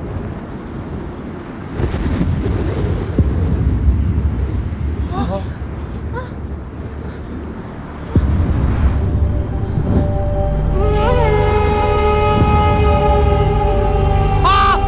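Strong wind-like gusts with a deep rumble, rising sharply about two seconds in and again about eight seconds in. From about eleven seconds sustained music swells in over them.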